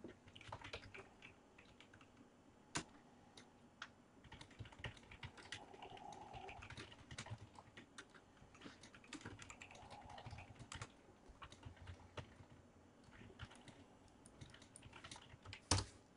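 Faint typing on a computer keyboard: irregular key clicks.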